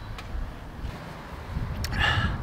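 Low rumble of wind on the microphone outdoors, with a couple of faint clicks, one just after the start and one near the end.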